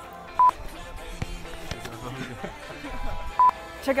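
A short, high electronic beep, sounded twice about three seconds apart.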